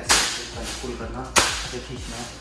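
A thin plastic carry bag snapping taut with a sharp crack, twice, about 1.3 seconds apart, as it is whipped through the air in a hand-speed drill.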